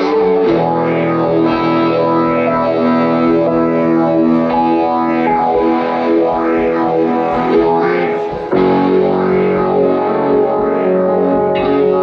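Live rock band playing an instrumental passage led by electric guitar with distortion and effects over bass and drums. It moves into a new chord about eight and a half seconds in.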